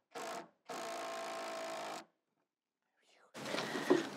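Cordless drill motor running in two short bursts, then a steady run of about a second and a half, boring into the shed's wooden wall. It stops, and a rustle of movement follows near the end.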